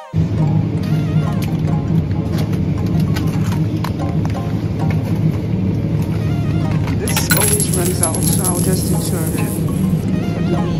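Supermarket aisle sound: a steady low hum with voices in the background, and the clicking and crackling of plastic meat trays being picked up and handled, busiest about seven seconds in.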